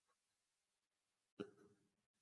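Near silence, broken about one and a half seconds in by a single short throat sound from a person, like a hiccup.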